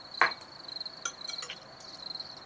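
A cricket trilling steadily in a high, finely pulsing tone. A brief voice sound comes just after the start, and a few light clicks of cutlery on a plate come around the middle.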